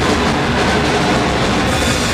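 Live rock band playing loud without vocals, drums, cymbals and distorted electric guitar blurring into one dense, overloaded wash.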